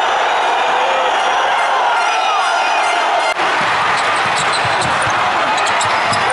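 Steady din of an arena crowd. After a sudden cut about halfway through, a basketball bounces several times on the hardwood court, with short high sneaker squeaks over the crowd.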